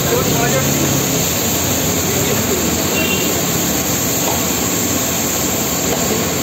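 Steady, dense noise of a busy street-food stall, with the voices of people talking in the background.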